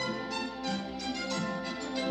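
Orchestral film score led by strings playing held notes: the music of an animated rainstorm scene.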